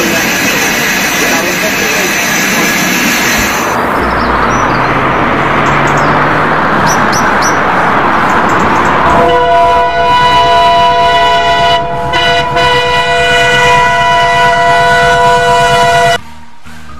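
Train running sounds, changing abruptly about four seconds in, then from about nine seconds in a train horn sounding a long, steady multi-note chord, with a brief break near twelve seconds.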